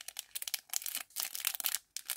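Thin clear plastic bag crinkling in irregular crackles as it is handled in the fingers.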